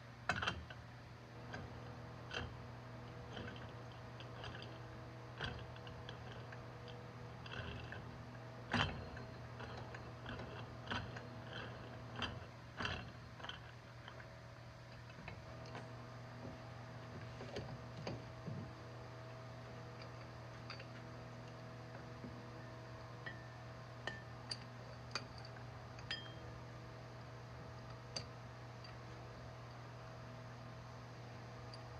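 Scattered light clicks and knocks of metal tool parts being handled as a manual mini tire changer is put back together on a wheel rim: a cone fitted onto the threaded centre shaft and the mount bar set in place. A steady low hum runs underneath.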